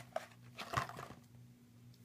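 Faint handling noise of cardboard drink-mix boxes against a plastic shopping bag: a few soft clicks and rustles in the first second, then quiet room tone with a low steady hum.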